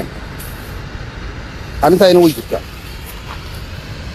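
A man's voice speaks one short phrase about two seconds in, over a steady low background rumble.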